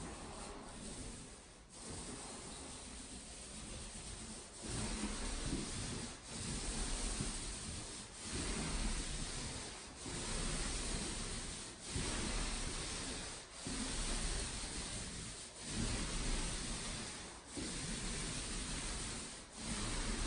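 Paint roller loaded with paint, on an extension pole, rolling over drywall: a rubbing swish repeated in up-and-down strokes about every two seconds.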